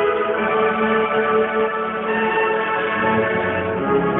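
A high school marching band playing slow, sustained chords with long held notes that change near the end.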